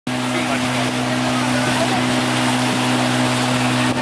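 Outboard motor of a small open boat running at a steady cruising speed, a constant low drone under a loud rush of wind and water. It stops abruptly just before the end.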